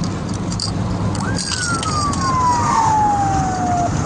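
Ambulance siren sounding one long falling wail that starts about a second in and cuts off abruptly near the end. Underneath it is the steady low road and engine noise inside the ambulance's cab at high speed.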